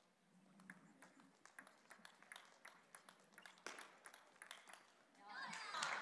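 A table tennis rally heard faintly: the ball clicking sharply off the rackets and the table again and again. About five seconds in, the crowd swells into cheering and clapping as the point ends.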